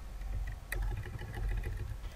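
Low steady background hum in the recording, with one sharp click about a third of the way in and a few fainter ticks.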